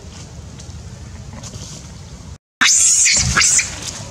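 Wind rumbling on the microphone, then, after a short break, a loud harsh burst of about a second: a macaque mother scuffling through dry leaf litter as she dashes off with her baby.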